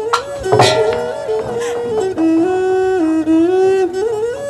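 Bassac theatre ensemble music: a bowed fiddle plays a slow melody of held notes moving in small steps, with a percussion strike about half a second in.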